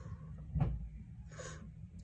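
Quiet handling of a thick deck of oracle cards: a soft tap a little past half a second in, then a brief soft rustle.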